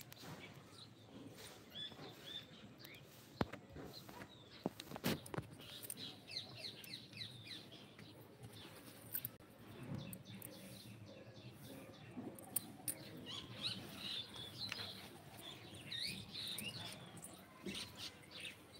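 Small birds chirping repeatedly in quick, high calls, busiest about five to seven seconds in and again toward the end. Two sharp knocks, about three and a half and five seconds in, are the loudest sounds.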